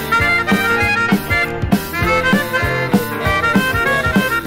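Skiffle boogie instrumental: a reedy free-reed lead plays the melody over a steady bouncing bass-and-rhythm beat, about three beats a second.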